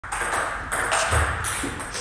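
Table tennis rally: the celluloid ball clicking off rubber paddles and the table in several quick hits.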